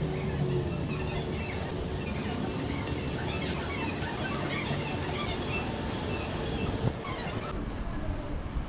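Steady outdoor city noise beside a railway station, traffic and rail rumble mixed, with many short high chirps scattered over it and a brief knock near the end.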